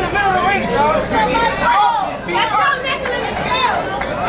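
Overlapping chatter of several spectators talking at once, with no single voice clear.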